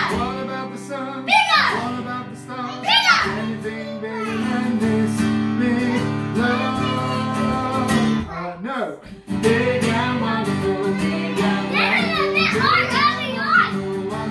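An acoustic guitar is strummed while voices, a child's among them, sing a children's worship song. There is a short break in the sound about eight and a half seconds in.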